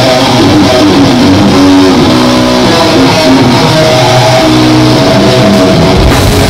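Electric guitar and bass guitar of a live metal band playing a slow intro of held, changing notes, recorded loud close to the stage.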